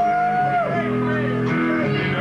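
Live rock band playing: guitar chords over bass, with a high held note that bends up at its start and down at its end in the first second or so.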